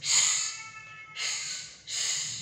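A woman voicing the 'sh' sound as a drawn-out hiss: two shushes in a row, the second shorter, with a third just beginning at the end.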